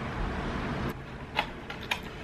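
Small plastic sauce cup and clear plastic takeout clamshell being handled while sauce is poured onto a lobster roll: three light clicks, the first about a second in, over a faint steady hiss.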